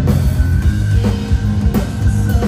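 Progressive metal band playing live in an instrumental passage: electric guitars over a drum kit struck in a steady, regular pattern, loud and heavy in the low end.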